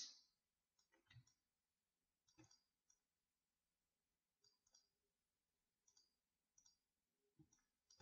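Near silence with a scattered handful of faint, short clicks from a computer mouse and keyboard being worked.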